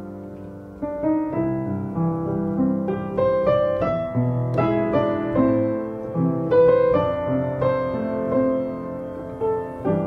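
Piano music: single notes picked out in a slow melody over lower held notes.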